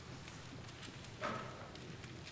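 A hushed congregation during silent prayer: a faint low hum of the room, with scattered soft clicks and shuffles from people standing with prayer books, and one brief, louder sound about a second and a quarter in.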